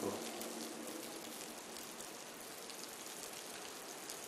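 Faint steady hiss with no distinct events, easing off slightly over the first second.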